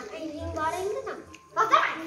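A young child's voice, brief untranscribed vocal sounds in two stretches, the second starting about one and a half seconds in.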